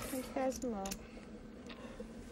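A short, quiet spoken phrase in the first second, then low room noise with a few faint clicks.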